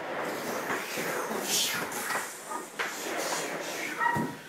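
Continuous scuffling and rustling of a play fight between people on chairs, with a few short knocks as bodies and chairs bump together.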